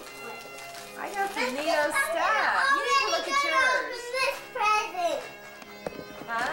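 A young child's high voice chattering and squealing without clear words for about four seconds, starting about a second in. A faint steady tone runs underneath.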